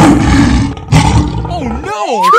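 Lion roar sound effects: two roars, the first right at the start and the second just under a second later, followed by a gliding, voice-like cartoon call near the end.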